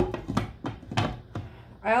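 Glass pan lid set down on a frying pan: a sharp clack at the start, then a few lighter taps and clinks over the next second and a half as it settles on the rim.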